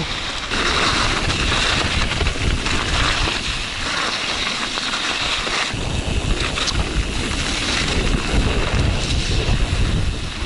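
Wind buffeting the microphone and a Yeti SB140 mountain bike's tyres rolling over snow and dirt on a fast descent, with a heavier low rumble from about six seconds in.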